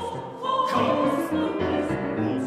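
Music: a choir of voices singing an Armenian folk song, swelling louder about half a second in.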